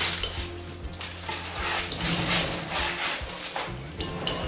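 Metal spatula scraping under baked turnovers on a parchment-lined metal baking sheet, with the parchment paper crinkling and rustling as a turnover is lifted off.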